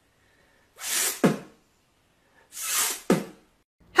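A man sneezing twice, about two seconds apart, each a breathy build-up ending in a sharp burst.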